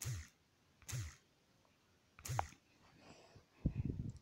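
Four soft thumps about a second apart: handling noise from fingers tapping the phone's touchscreen, picked up by the phone's own microphone.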